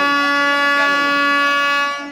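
Train air horn sounding one loud, steady blast on a single note, starting suddenly and lasting about two seconds.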